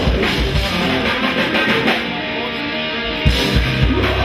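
Live rock band playing loud, with electric guitars, bass and drum kit. About two seconds in the drums drop back under a held chord, then the full band comes back in with a hard hit shortly before the end.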